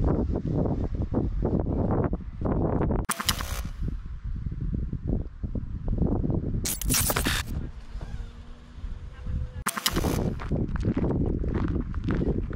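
Wind buffeting an action camera's microphone outdoors: a dense low rumble that gusts up and down, with a few short, harsher blasts.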